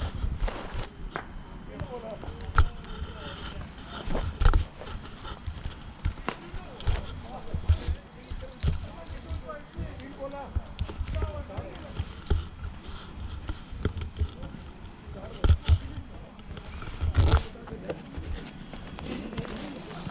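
Irregular low thumps and sharp knocks from someone walking and moving about with a body-worn camera on a dirt path, with faint voices in the background.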